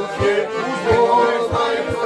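Piano accordion playing a folk tune, its bass notes keeping a beat about twice a second, while a group of men and women sing along.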